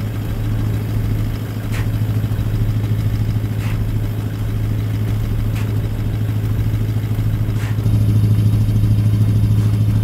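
A 4WD's engine idling steadily, its hum getting louder from about eight seconds in. Faint short scrapes come about every two seconds as plastic recovery boards are worked into soft sand in front of the bogged front tyre.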